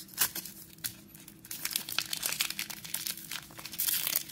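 Foil trading-card pack wrapper crinkling as it is handled, with a few light clicks at first and a denser crackle from about a second and a half in.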